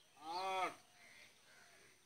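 A single short call lasting about half a second near the start, its pitch rising and then falling.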